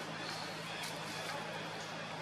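Outdoor ambience: a steady low hum under a haze of background noise, with faint distant voices and a few brief high chirps.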